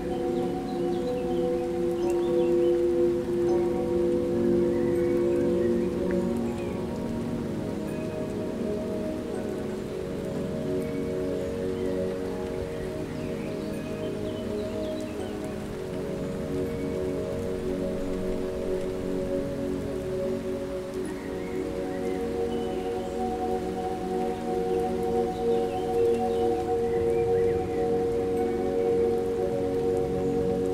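Calm ambient music: soft, long-held pad tones over a steady rain-like hiss, with the lowest held tone fading out about seven seconds in.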